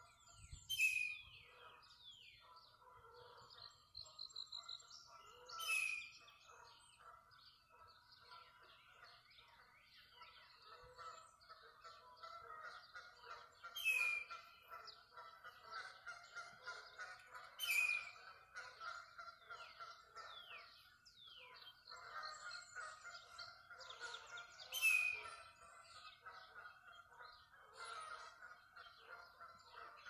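Dawn chorus of songbirds. One nearby bird gives a loud, sharply falling call five times, several seconds apart, over steady chatter and calls from many more distant birds.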